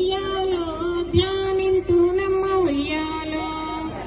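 A high woman's voice singing a Telugu Bathukamma folk song, holding long, steady notes with short glides between them. A short low thud falls about a second in.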